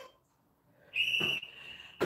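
Interval-timer app on a tablet sounding one high, steady electronic beep about a second in, marking the switch from rest to a work interval; the tone is loud for under half a second, then trails on more faintly.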